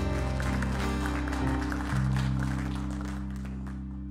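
A church worship band's final chord ringing out on electric bass, guitar and keyboard, shifting once about two seconds in and then fading away, with applause from the congregation over it.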